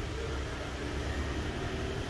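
Steady low background hum and room noise, with no distinct events.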